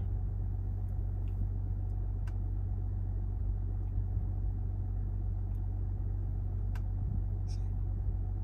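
Steady low hum of a stationary car heard from inside its cabin, with a few faint clicks.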